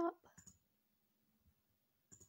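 The tail of a spoken word right at the start, then two faint clicks about half a second in, then near silence with a faint low hum.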